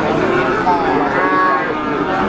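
Cattle mooing, with one drawn-out call in the middle, against a background of people's voices.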